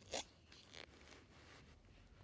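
Brief rustle of a picture book's paper pages being handled, with a fainter second rustle just under a second in.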